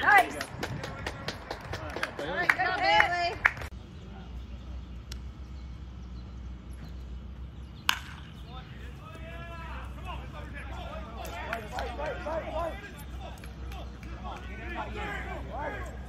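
Spectators shouting and cheering, then a cut to a quieter scene. About eight seconds in, a single sharp crack of a baseball bat meeting a pitch, followed by scattered spectator voices.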